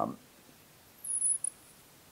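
A marker squeaking on a glass lightboard as a curve is drawn: one thin, very high squeak about a second in, lasting about half a second.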